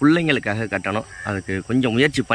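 A man talking close to the microphone, with a faint, steady, high-pitched insect chirring behind the voice.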